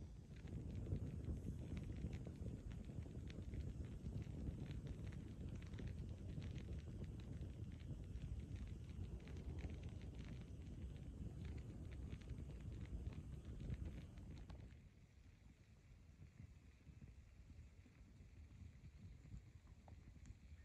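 Wood campfire crackling with many small, quick pops over a low rumble. About fifteen seconds in the rumble drops away and only a few faint pops remain.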